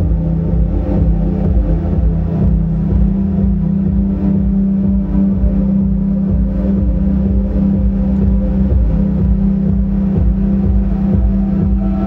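Live ambient drone music from electric guitar played through effects pedals, with laptop electronics: a dense, steady low drone with layered sustained tones above it, no beat and no pauses.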